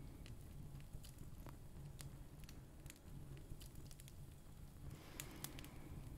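Near silence: faint room tone with a low steady hum and a few scattered faint clicks.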